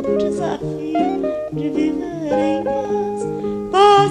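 Music: an instrumental passage of a song, plucked guitar over held notes.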